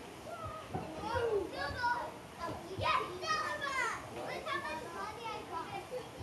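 Children's high-pitched voices calling out as they play, loudest from about one to four seconds in.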